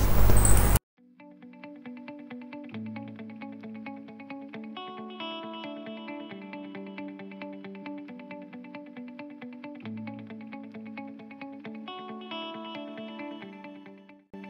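Soft background music: a plucked, guitar-like melody with an effects sound, in evenly picked notes. It starts just after a loud noise in the first second is cut off abruptly.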